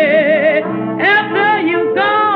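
1920s blues-jazz band recording with cornet, clarinet, trombone, piano and banjo: a lead line holds a note with a wide, even vibrato, then moves through shorter sliding notes over the band. The sound is thin, with no treble, as on an old 78 record.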